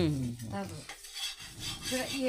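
A metal ladle and spatula scrape and rub on an iron griddle as a flatbread cooks on it over a wood fire.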